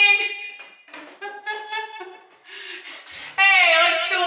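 A woman's voice in a wordless, drawn-out vocalization through a handheld microphone: a held high note that breaks off about half a second in, a few shorter, quieter notes in the middle, and a loud held note bending in pitch near the end.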